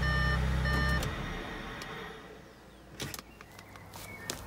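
Audi S5 engine idling, heard from the cabin, with a dashboard chime beeping in a repeating pattern over it. Both stop suddenly about a second in. A few faint clicks follow near the end.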